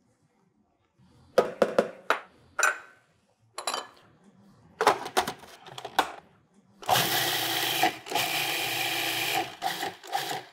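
Food processor motor running in two pulses, about a second and then a second and a half, mixing melted butter into a ground rice-cereal and almond crumb crust. Before it come a series of plastic clicks and knocks as the processor's lid and feed-tube pusher are handled.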